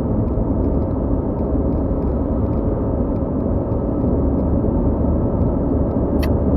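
Steady cabin noise of a 2001 Audi A4 B6 with a 2.0-litre petrol four-cylinder driving at an even speed. Engine hum and tyre rumble blend into a constant low drone.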